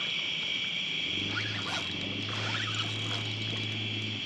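Steady high-pitched chorus of night insects, with a low steady hum coming in about a second in.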